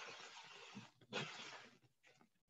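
Two faint rustling swishes, each under a second, from things being handled while a mixer and baking ingredients are fetched and set out.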